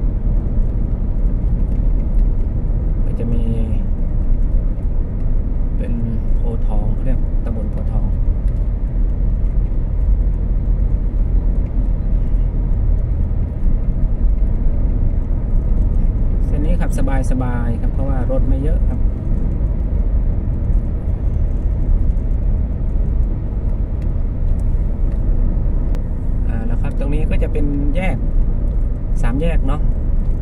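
Steady low rumble of road and engine noise inside a moving car's cabin. A man's voice speaks briefly a few times over it.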